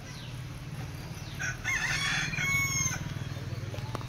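A rooster crowing once, a call of about a second and a half, over a steady low hum.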